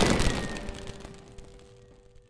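Sitar background music and its final effect hit dying away: a shimmering hiss and a thin falling whistle-like tone fade out over about two seconds, leaving a faint held note.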